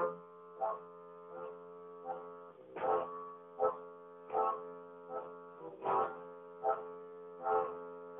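Music playing from a 7-inch vinyl test pressing on a turntable, picked up by a phone's microphone: a sustained droning chord over a steady beat, about one hit every three-quarters of a second.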